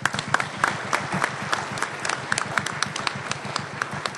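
Audience applauding: a steady, dense patter of many hands clapping.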